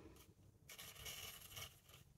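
Faint scraping rustle of thin twine being drawn across a paper envelope while a knot is tied, lasting about a second in the middle, with near silence around it.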